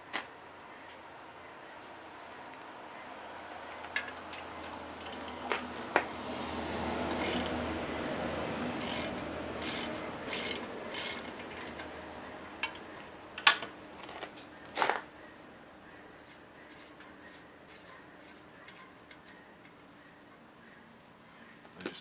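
Hand tools working the steel fittings of a skid-steer over-the-tire track: scattered metallic clicks and clanks, with a run of evenly spaced clicks about halfway through. Under them a rushing background noise swells and then fades.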